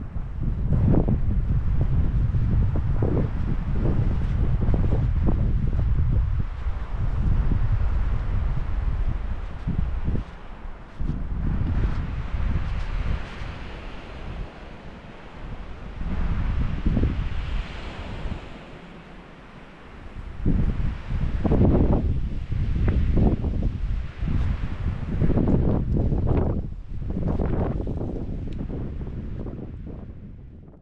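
Strong wind buffeting the microphone, a heavy low rumble that rises and falls in gusts. It drops off for a moment after the middle, and a rushing hiss runs through the middle of it.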